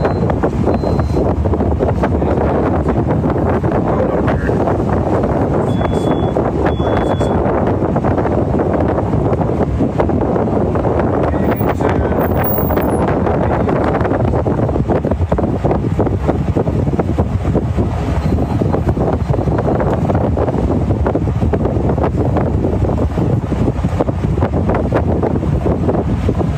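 Wind buffeting the microphone on the deck of a warship under way at sea. It makes a loud, steady rush of noise that hardly changes.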